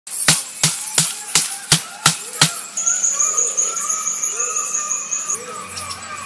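A wide blade chopping into a bamboo stalk: seven sharp strikes, about three a second, stopping at about two and a half seconds. After that an insect keeps up a high, pulsing trill that stops near the end, with short repeated bird-like calls behind it.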